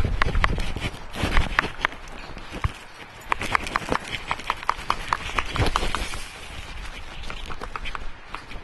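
A large plastic tub being tipped and handled while worm compost is dumped out of it onto a garden bed: a string of irregular knocks and sharp clicks, busiest a few seconds in.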